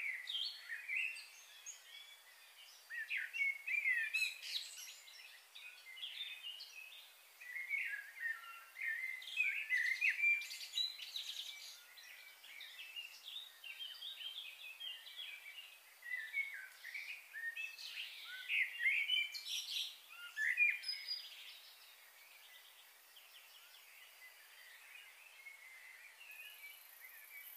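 Birds chirping in busy bursts of short, quick notes, with quieter stretches between.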